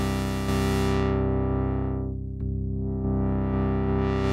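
Moog Subharmonicon's oscillators and sub-oscillators sounding a sustained chord of stacked octaves and fifths, stepping to a new chord about half a second in and again near the middle. The filter closes down to a dull, muffled tone in the middle and opens bright again near the end.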